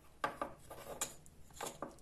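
Wooden puzzle pieces clicking and rubbing against each other as they are handled, a handful of light knocks spread across the two seconds, as the partly fitted wooden cross slips open.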